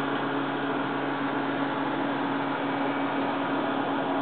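Steady hum with a hiss over it from running aquarium equipment, holding an even pitch throughout.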